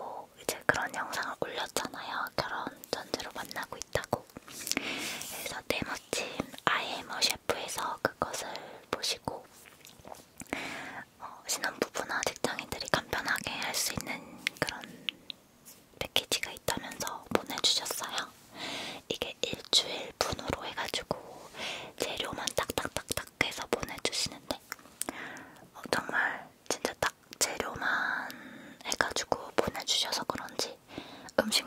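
A woman whispering in Korean close to the microphones, her soft talk broken by many small crisp clicks and short pauses.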